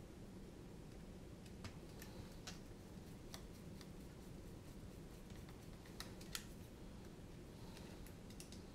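Faint, scattered clicks and light taps of the plastic parts of a radio transmitter being handled and fitted together, over a low steady room hum.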